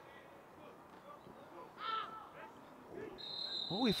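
Referee's whistle blown once near the end, a single steady high note lasting about a second, stopping play for a foul in the penalty area. Before it, a faint shout on the pitch over quiet open-air field ambience.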